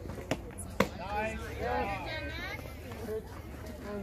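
A pitched softball hitting the catcher's mitt with one sharp pop a little under a second in. Drawn-out shouting voices follow.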